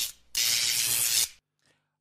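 Hissing, static-like sound effect of a channel logo intro. It breaks off briefly near the start, comes back for about a second, then cuts off sharply.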